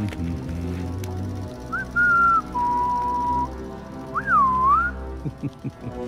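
A short whistled tune over background music: a quick rising note, a held high note, a lower held note, then a swoop up, down and back up. A few quick knocks come near the end.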